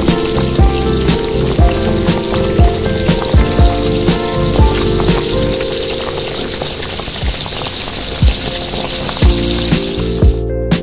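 Tuna balls deep-frying in hot oil, a steady sizzle, under background music with a regular drum beat.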